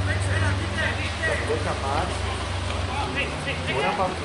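Distant shouts of footballers and spectators on an open pitch over a steady low hum from an idling engine.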